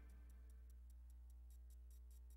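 Near silence between broadcast segments: a low steady electrical hum with faint, evenly spaced clicks, several a second.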